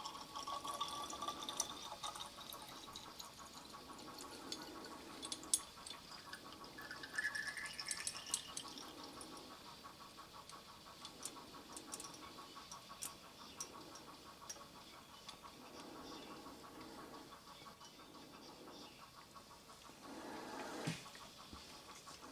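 Faint trickle of liquid styrene draining from a pipette into a glass graduated cylinder, with a thin tone that rises in pitch for about a second and a half partway through, and scattered small clicks.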